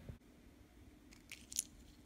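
Pistachio shells cracking and clicking: a quick cluster of sharp, faint cracks past the middle, the last one the loudest.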